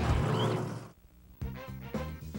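Loud monster truck engine noise that fades out about a second in, followed by music starting about half a second later.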